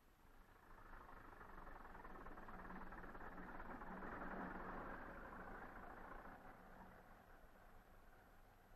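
Faint, muffled tractor engine running, swelling to its loudest about halfway through and then fading away.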